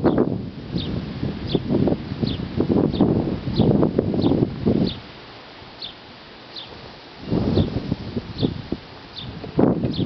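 A bird chirping over and over, a short high call about every two-thirds of a second, over irregular low rustling and rumbling noise that drops away for a couple of seconds midway.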